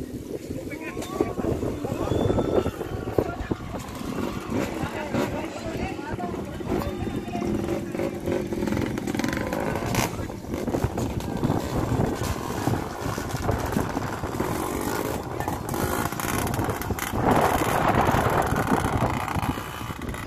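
Dirt-bike engines running at a distance, louder for a couple of seconds near the end, under people's voices talking.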